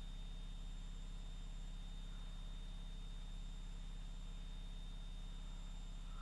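Washing machine running in the background: a steady, unchanging low hum, with a faint high whine above it.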